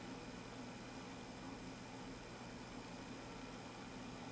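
Faint steady hiss with a low hum underneath: room tone, with no distinct event.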